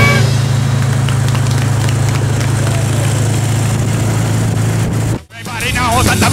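A car engine running with a steady low hum, with voices and street noise. About five seconds in, the sound cuts out abruptly and a song with a singing voice starts.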